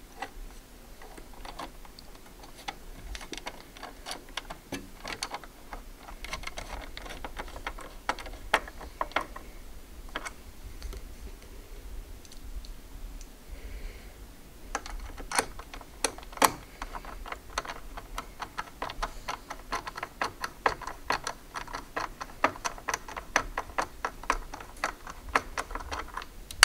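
Screwdriver turning small machine screws into a CPU cooler's mounting bars on a motherboard: a run of short, light clicks and ticks, sparse at first and coming thick and fast in the second half.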